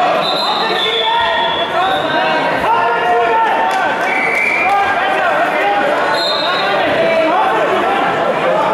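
Many voices calling and shouting over one another in a large sports hall, with a few dull thuds.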